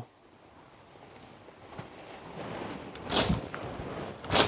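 Hedge slasher chopping into a hornbeam hedge: leaves and shoots rustle, growing louder, then one sharp swishing chop as the blade cuts through the shoots about three seconds in.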